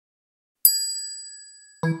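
A bright chime rings once about half a second in, with a sharp attack, and fades away over about a second. Near the end a short keyboard-like music jingle begins.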